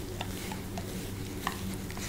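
A grooming brush drawn through a long-coated German Shepherd's fur: a soft scratchy rustle with a few light, irregular ticks from the brush. A steady low hum runs underneath.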